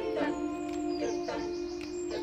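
A group of voices singing a cappella in an improvised circle song, several singers holding long steady notes together in harmony.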